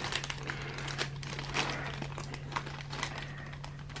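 Thin plastic zip-lock bag of LEGO parts crinkling and rustling in irregular little crackles as hands pull and fumble at its stubborn zip seal.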